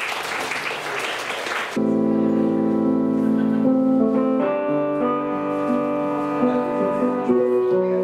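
Audience applause trailing off, then from about two seconds in a stage keyboard playing held, sustained chords, the notes changing every second or so.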